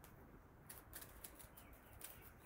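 A small kitchen knife cutting the leafy hull off a fresh strawberry: a quick run of faint, crisp clicks, barely above near silence.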